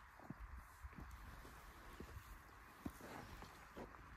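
Near silence with a few faint, irregular soft knocks scattered through it.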